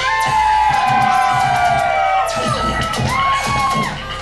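Audience cheering and whooping as a live electronic dance song ends, with gliding tones and music still sounding underneath.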